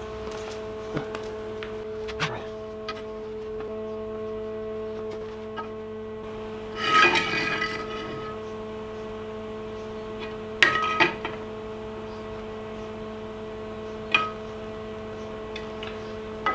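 Steel parts and tools clinking and knocking as a metal mount is handled and adjusted. There are a handful of sharp metallic clanks with brief ringing, the loudest about seven seconds in, over a steady hum.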